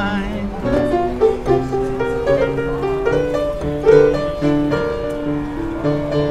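Black upright piano played in a slow blues, an instrumental passage of struck chords and a stepping melody line.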